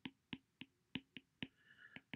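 Faint, irregular clicks of a stylus tapping and dragging on a tablet's glass screen while handwriting, about seven small ticks in two seconds.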